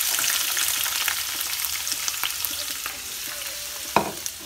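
Chopped peppers, onion and scotch bonnet sizzling and crackling in hot cooking oil in a frying pan, just after being tipped in. The sizzle eases slightly over the seconds, and a sharp knock sounds right at the end.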